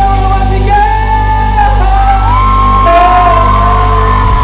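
A male singer singing live into a handheld microphone over a full R&B band, loud in a concert hall. About two seconds in he swings up into a long held high note.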